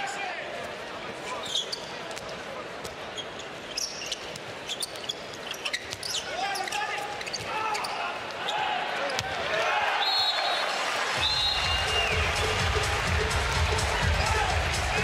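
Indoor handball game sound: the ball bouncing on the court and players' shoes squeaking over a steady crowd din. Near the end come two short high tones, and arena music with a deep bass sets in.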